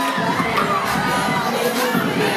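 A group of middle-school children shouting and cheering excitedly over one another.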